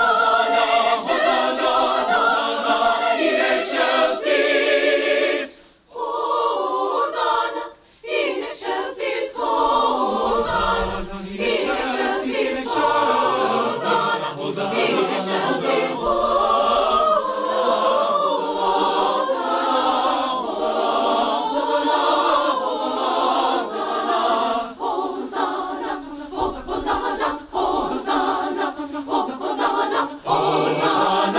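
A choir singing, with two short breaks between phrases about six and eight seconds in.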